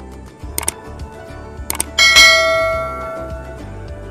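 Subscribe-button overlay sound effect: a few quick mouse clicks, then a bell chime that rings out and dies away over about a second and a half, over background music.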